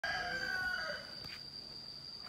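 A rooster crowing: the end of one drawn-out call, falling slightly in pitch and fading about a second in. A steady high-pitched insect drone runs underneath.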